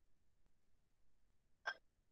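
Near silence, broken by one brief pitched blip near the end.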